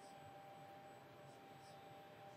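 Near silence: room tone with a faint steady tone.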